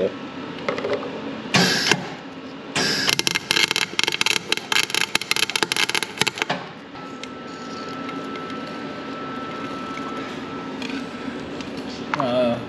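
MIG welder arc crackling as the corner between differential spider gears and the locking plate is welded up: a brief burst about a second and a half in, then a continuous run of about four seconds. After the arc stops, a steady hum with a faint thin whine.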